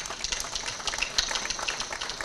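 Audience applause: dense, irregular clapping that starts as the speaker pauses and carries on steadily.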